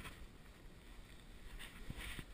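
Faint low rumble of wind on an action camera's microphone, with a couple of soft crunches in snow near the end.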